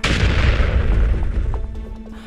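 A sudden loud boom sound effect: a sharp hit with a deep rumble that fades away over about two seconds.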